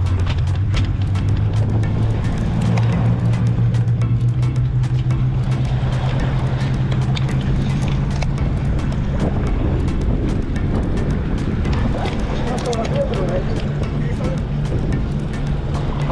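Steady low drone of a fishing boat's engine running, with frequent sharp clicks and knocks over it.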